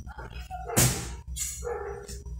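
A dog barking repeatedly, about once a second, with one louder, sharper bark just under a second in.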